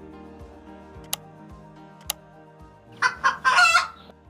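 Background music with two sharp mouse-style clicks about a second apart, as a subscribe-button animation plays. Near the end comes a loud pitched call in three parts, two short notes then a longer one.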